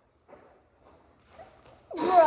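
Faint brief knocks and rustles from children moving and posing in a quiet room, with a faint bit of a voice just before the end.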